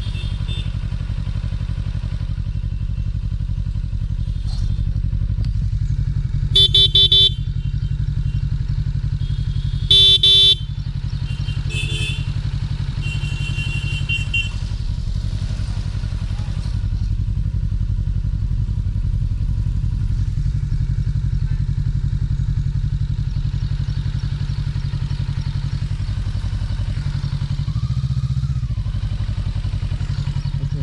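Motorcycle engine running at low revs, a steady low drone. A horn honks loudly twice, about six and ten seconds in, each under a second, and fainter horn beeps follow shortly after.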